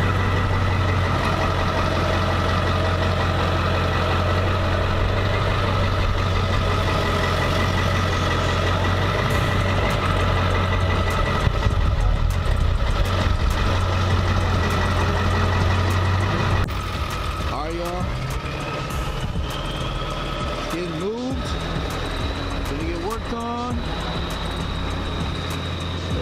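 A pickup truck's engine running steadily at idle, loud and close, with the trailer hitched behind it. About two thirds of the way through the level drops, and a few voices come in near the end.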